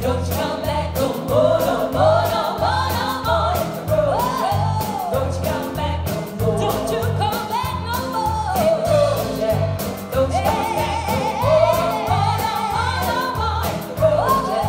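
Live sixties-style pop and soul band: women singing lead and backing vocals over electric bass, keyboard and drums, with a steady bass-and-drum beat.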